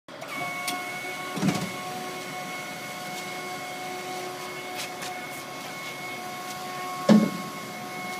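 Hydraulic pump of a truck-mounted folding platform whining steadily as it lowers the chequer-plate deck from upright behind the cab down over the chassis. There is a metallic clunk about a second and a half in and a louder clunk near the end.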